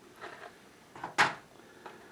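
A hash brown patty being set down in a disposable aluminium foil baking pan: one sharp tap of the foil about a second in, with fainter handling sounds before and after it.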